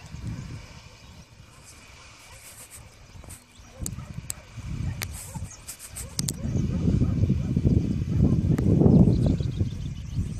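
Wind buffeting the microphone in an irregular low rumble that gusts much louder over the second half, with a few sharp clicks near the middle.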